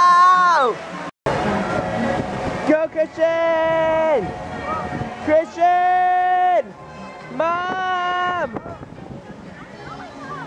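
A person's voice giving long, loud held calls, each about a second and dropping in pitch as it ends. One is already going at the start and three more follow, with a faint noisy background between them.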